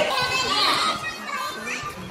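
A group of teenagers' voices calling out and chattering over one another, loudest in the first second and then dying down.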